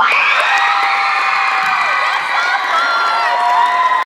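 Crowd cheering and screaming, with many shrill overlapping shrieks and whoops, breaking out as the music ends.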